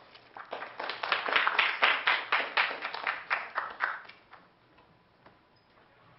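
Audience applauding in sparse, separate claps that fade out about four seconds in.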